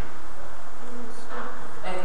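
A loud, steady buzz in the recording, of the electrical kind, with a brief faint voice about a second in.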